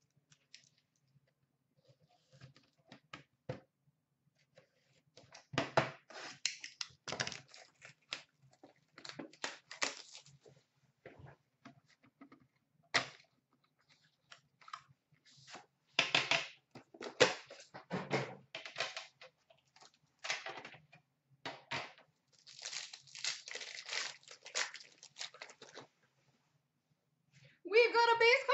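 A 2014-15 Upper Deck Premier hockey card box being torn open by hand: bursts of irregular tearing and crinkling of wrapping and cardboard, with a long dense stretch of crinkling near the end.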